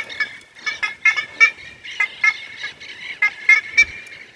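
Black-faced ibis (bandurria, Theristicus melanopis) calling: a rapid series of short squawks, its characteristic call, like a gull mixed with a donkey with a stuffed nose.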